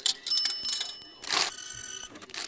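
Ticket vending machine being operated: a button click, then an electronic bell-like chime lasting about a second, a short noisy burst, and a second chime at different pitches near the end.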